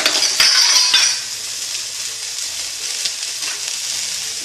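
Sliced onions, green chillies and ginger sizzling in coconut oil in a steel pan. It is louder with a few clatters for about the first second, then a steady sizzle.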